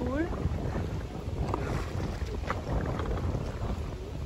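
Kayak paddling on canal water: small paddle splashes and drips over a steady low rumble of wind on the microphone.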